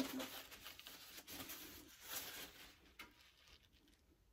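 Faint rustling and rubbing of a paper towel wiping a plant pot, with a couple of light knocks, dying away about three seconds in.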